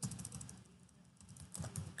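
Typing on a computer keyboard while a word is deleted and retyped: a run of key clicks, a short pause in the middle, then more keystrokes near the end.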